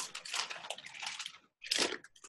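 Faint rustling of a painted cotton apron being lifted and tilted. A short louder rustle comes near the end.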